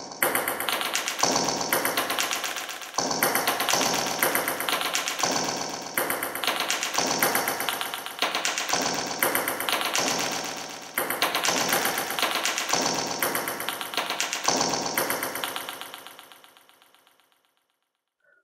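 A rhythmic sampled music loop of quick, repeated pitched percussive notes, played back clean with the distortion effect set to zero. It fades away over the last few seconds.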